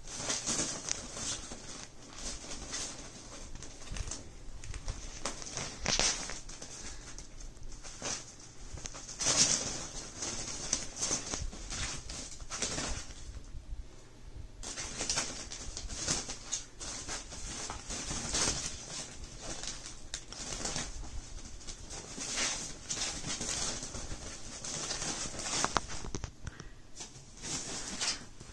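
Kittens scrambling in and over a nylon play tunnel: the fabric rustles and crinkles in irregular bursts throughout, with a few thumps, the loudest about nine seconds in.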